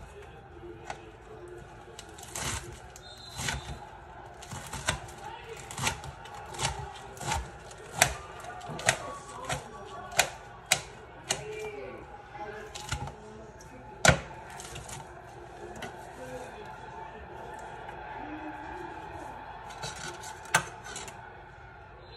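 Knife chopping lettuce on a metal sheet pan: irregular sharp clicks of the blade striking the tray, about one or two a second, the loudest about halfway through, with soft rustling of the cut leaves.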